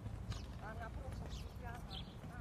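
Faint, indistinct voices under a steady low rumble on a phone microphone outdoors.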